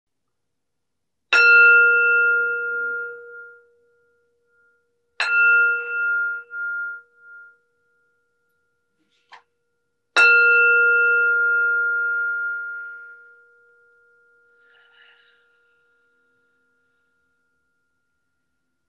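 A meditation bell struck three times, a few seconds apart, to open a meditation. Each strike rings a clear, bright tone that fades away, and the third rings longest.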